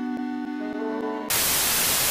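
A held musical note, then about 1.3 s in a burst of loud, even TV-static hiss takes over, used as a transition between clips.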